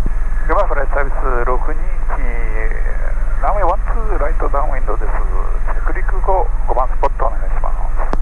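Thin, telephone-like voices on the headset audio through most of the stretch, over the steady low drone of an EC130 helicopter in flight.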